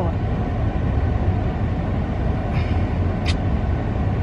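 Steady engine and road rumble inside the cabin of a moving vehicle.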